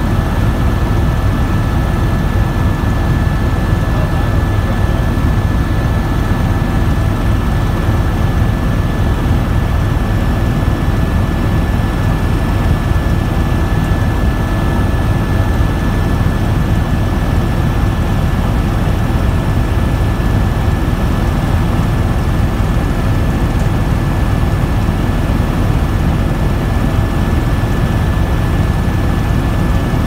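Helicopter in flight heard from inside the cabin: the steady, loud drone of the engine and rotor, with a thin high whine held over it.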